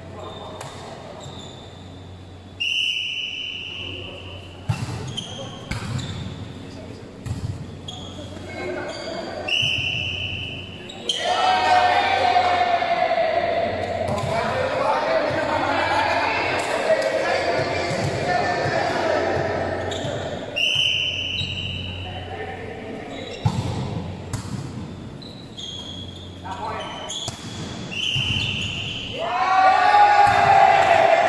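Volleyball being played in a large echoing hall: sharp slaps of the ball being hit and striking the floor, with a few short, high, steady squeals. Players shout and call out loudly through the middle stretch and again at the end.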